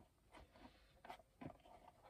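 Near silence with a few faint, short rustles of a Portland Leather mini crossbody bag's stiff leather being handled and worked inside out by hand.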